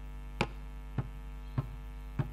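Steady electrical mains hum from an amplified sound system, with three sharp taps evenly spaced about 0.6 s apart.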